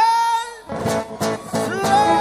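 Argentine chacarera folk music: a held note fades out, then strummed guitar comes back in about two-thirds of a second in, and a new long held note starts near the end.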